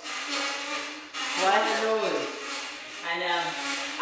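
A person's voice in three short stretches, with pitch that rises and falls, and no words the recogniser could make out.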